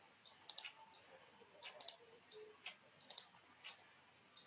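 Near silence with about half a dozen faint, sharp clicks at uneven intervals.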